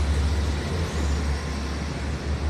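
City street ambience: a steady low rumble and hiss of road traffic, with no single vehicle standing out.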